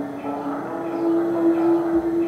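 Improvised ambient electronic music: a sustained drone of layered steady tones. The main tone steps up slightly about half a second in and then swells louder.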